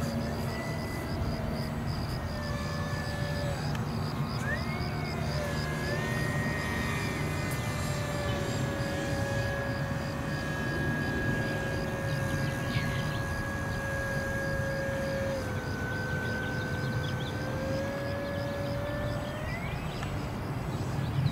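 Radio-controlled model cargo plane's motor and propeller droning in flight, a steady pitched whine that wavers briefly, dips slightly about two-thirds of the way through, then rises near the end.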